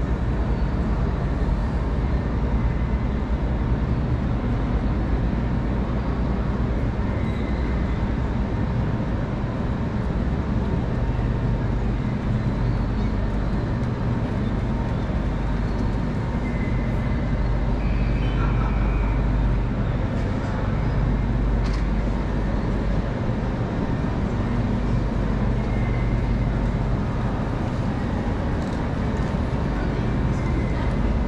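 Steady low rumble of road traffic on a busy city street, with vehicles running and passing continuously.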